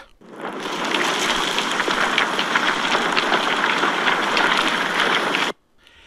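Earthquake sound effect: a steady rushing noise with small crackles. It fades in over the first half second and cuts off abruptly about five and a half seconds in.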